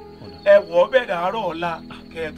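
A man speaking over a steady, high-pitched trill of crickets chirping.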